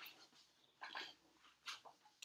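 Near silence: room tone with a few faint, brief sounds.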